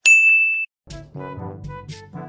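A single bright ding, a bell-like chime held for just over half a second and cut off sharply, marking the title card. Background music comes back in about a second in.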